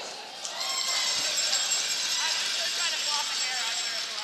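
Curling arena ambience: a steady murmur of the crowd and the rink, with faint distant voices from the ice.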